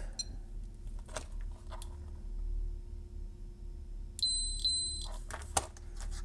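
High electronic beep from an Atlas ESR+ capacitor ESR meter, under a second long with a short break partway through, about four seconds in, while it tests a small electrolytic capacitor held in its clip leads. A few faint clicks of the test clips come before it.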